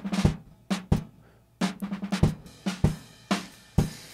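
Drum-kit sample loop, kick, snare and cymbal hits, playing through the DeHiss dynamic lowpass filter, which is rolling off its treble and cymbal wash. The hits come about twice a second, with a short break just after a second in.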